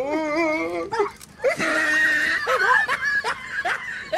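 Comedy sound effects: a wobbling, warbling pitched cry in the first second, then laughter-like and animal-like calls.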